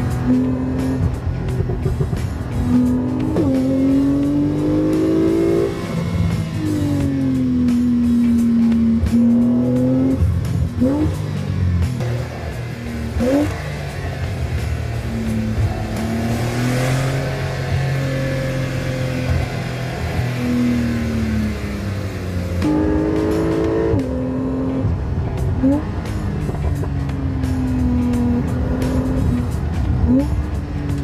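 Porsche 911 Targa 4 GTS six-cylinder boxer engine and exhaust under way, its pitch rising and falling again and again with several quick upward blips, over background music.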